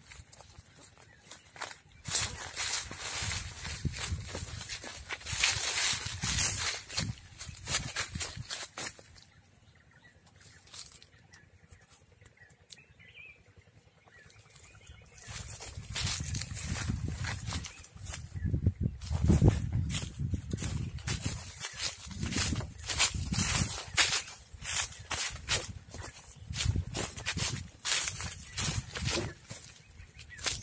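Footsteps crunching over dry fallen cashew leaves as a series of irregular crackles, with a quieter stretch about nine to fifteen seconds in. Bouts of low rumble come with the crunching in the second half.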